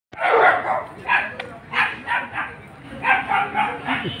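A dog barking: loud short barks in several quick runs.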